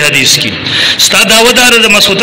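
A man speaking loudly in Pashto into a microphone, with a brief pause about half a second in before he goes on.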